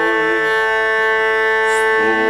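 Hurdy-gurdy playing a steady, buzzing-free drone of several held tones; the melody note above it stops about half a second in, leaving the drone sounding on its own.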